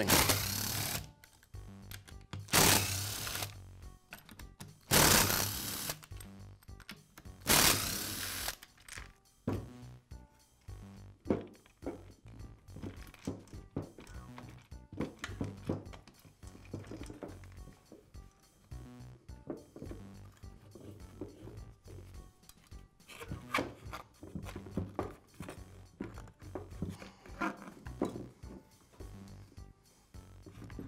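A cordless drill-driver running four short bursts of about a second each, backing out the screws of a string trimmer's plastic starter housing. Afterwards come quieter clicks and knocks as the plastic housing is worked loose, over soft background music.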